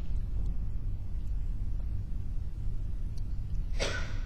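Steady low rumble, with a short, sharper noise just before the end.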